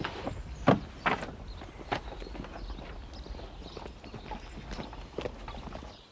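Footsteps and movement around a wooden bus shelter: a handful of sharp knocks and scuffs at uneven spacing, most in the first two seconds and one more near the end, over a steady low outdoor rumble.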